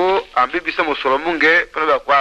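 A person speaking in continuous phrases, with short gaps between them.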